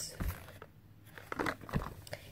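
A small cardboard candy box handled in the hands: faint crinkling and soft knocks. There is one knock shortly after the start and a cluster of crackles and knocks in the second half.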